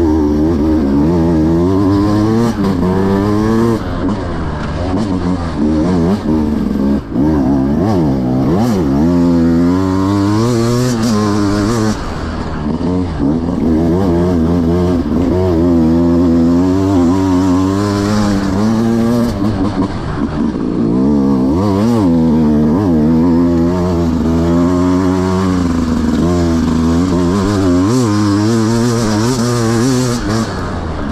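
Beta 200 RR two-stroke enduro motorcycle engine under constant throttle changes, its revs rising and falling every second or so as the bike is ridden over rough trail.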